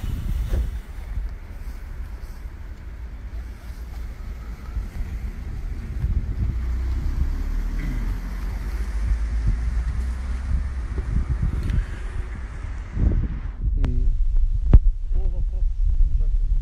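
Wind buffeting a phone's microphone, a steady low rumble, with faint voices beneath it.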